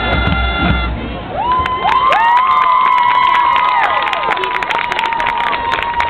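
A marching band's held chord cuts off about a second in. The crowd in the stands then cheers, with long whoops, and claps.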